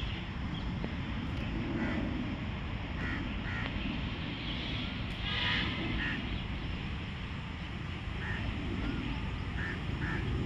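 Scattered short bird calls over a steady low outdoor rumble, with one louder call about five and a half seconds in.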